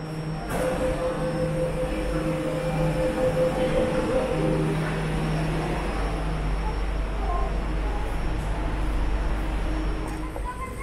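Jakarta MRT underground train heard at the platform and then from inside the carriage. A steady electric whine runs from about half a second to about four and a half seconds in, over a hum that cuts in and out. A low rumble builds in the second half.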